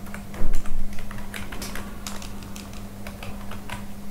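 Computer keyboard being typed on, irregular key clicks with a couple of louder strokes about half a second in, over a steady low hum.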